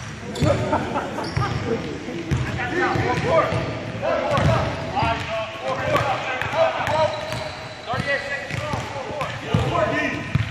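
A basketball bouncing on a hardwood gym floor several times, with indistinct voices throughout.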